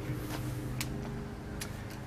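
A low steady hum with a couple of faint clicks, about a second apart.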